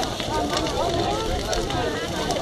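Large bonfire of heaped brush crackling, with a few sharp pops, under the overlapping chatter of several people.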